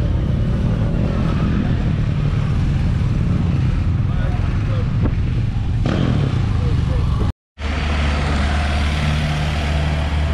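Motorcycle engines running as several motorcycles ride slowly past, one after another, with people talking in the background. The sound cuts out for a moment about seven seconds in, then a vehicle engine runs on with a steady low hum.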